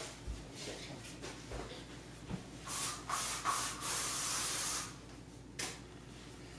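A hissing spray in a few short spurts lasting about two seconds, with a few soft knocks before it and one after.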